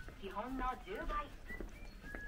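A person's voice speaking, indistinct, with no other clear sound.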